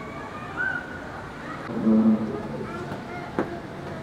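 Children's voices in a large prayer hall, with a short louder adult voice about two seconds in and a sharp click near the end.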